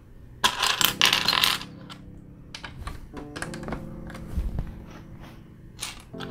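Loose LEGO pieces clattering as a hand rummages through a pile of parts on the table, loudest for about a second near the start, followed by lighter clicks of pieces being handled.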